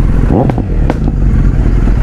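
Kawasaki Z900's inline-four engine running while riding, with a brief rise in pitch near the start and two sharp clicks.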